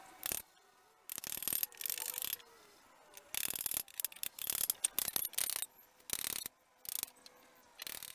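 Wooden pegs scraping and creaking against a wooden rail as they are worked into it, in about nine short rasping bursts with pauses between.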